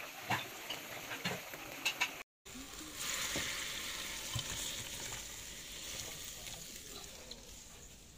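Braised pork belly in thick soy-braising sauce bubbling in a clay pot, with sharp pops of bursting bubbles. After a brief break about two seconds in, there is a steady hiss that slowly fades.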